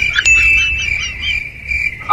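A steady high-pitched tone with short chirps above it and a low rumble beneath. A brief higher tone sounds near the start.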